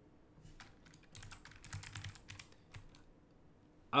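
Computer keyboard typing: a short, quiet run of keystrokes lasting about two and a half seconds as a search word is typed.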